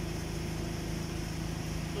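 A steady, unchanging low hum of a running motor.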